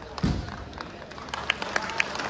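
One low thump shortly after the start, then a scattered series of short, sharp taps over steady background noise.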